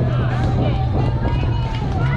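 Indistinct voices of players and spectators calling out around a youth softball field, with no clear words, over a steady low hum.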